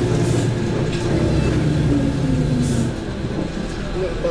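Engine and road noise of a moving motor vehicle heard from inside the cabin, a steady low hum that drops in level and pitch about three seconds in as the vehicle eases off. Two short hisses cut through, one near the start and one a little past halfway.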